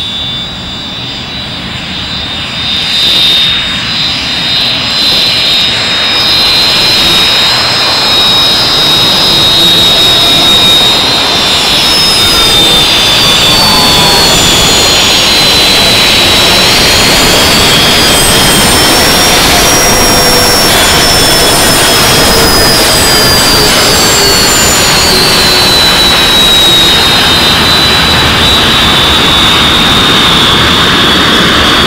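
English Electric Canberra's twin Rolls-Royce Avon turbojets running loud as the aircraft taxis close by: a high whine over a rushing roar. It grows louder over the first ten seconds or so, then holds steady, with the whine dipping and rising again about midway.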